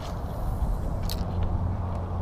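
Electric bow-mounted trolling motor running with a steady low hum, with two sharp clicks about a second apart.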